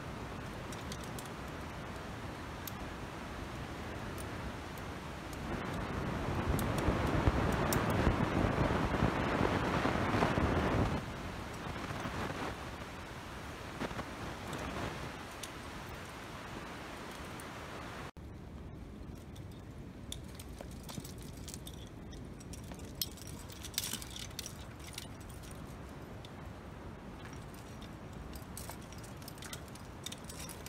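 Metal climbing gear, carabiners and cams racked on a harness, clinking in scattered light clicks as a climber moves up a rock crack. Under it runs a steady rushing noise that swells for several seconds in the first half, and about halfway through the sound cuts off abruptly and resumes quieter.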